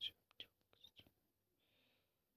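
A person whispering faintly close to the microphone: a few short breathy sounds in the first second, then a brief soft hiss near the end.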